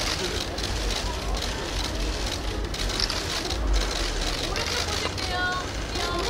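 Dense clatter of many camera shutters firing at a press photo wall, over a crowd's chatter, with a voice calling out briefly near the end.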